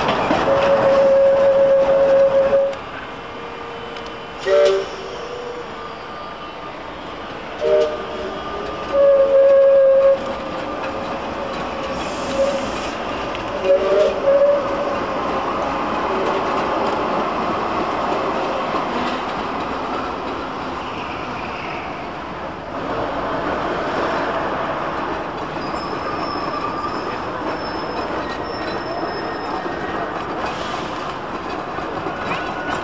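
Manchester Metrolink T68 tram's horn, a two-tone note held for nearly three seconds, then several short toots over the next twelve seconds, over the tram running on street track amid traffic and crowd noise.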